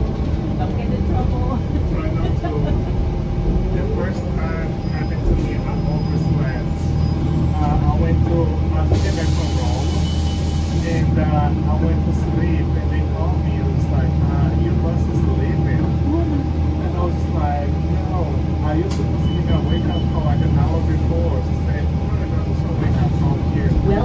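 Interior of a 2007 New Flyer C40LF transit bus cruising, its Cummins C Gas natural-gas engine giving a steady low rumble with a steady whine over it. There is a short hiss of air lasting about two seconds near the middle.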